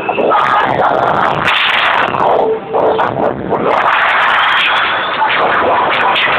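Loud rave music from a festival tent's sound system, recorded so close to overload that it comes through crackling and distorted.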